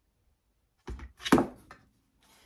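Two wooden knocks, the second louder, as a mounted cross-stitch panel is pulled off a painted wooden scale-shaped display stand, followed by a few lighter clicks.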